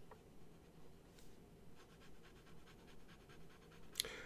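Faint scratching of a fountain pen's 0.6 mm steel stub nib on paper as a word is written, then a run of quick back-and-forth strokes about halfway in as a block of ink is scribbled; a small click at the very end.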